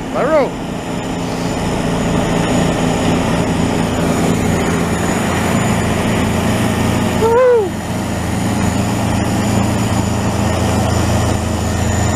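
A Larue truck-mounted snowblower's diesel engine runs steadily under load as it blows snow into a tractor-trailer, with the truck running alongside. The low drone grows stronger about halfway through.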